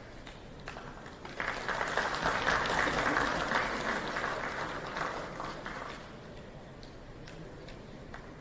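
Applause from a group of people in a large hall: a burst of clapping starts about a second and a half in, holds, and dies away by about six seconds, with a few scattered single claps before and after.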